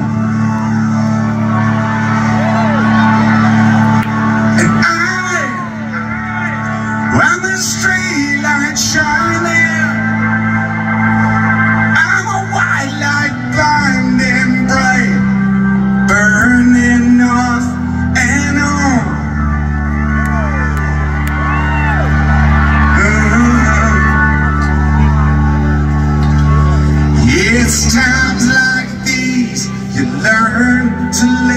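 Live rock band playing an instrumental song intro on electric guitar and bass, the low chords shifting every few seconds, recorded from the crowd. Audience members nearby shout and whoop over the music.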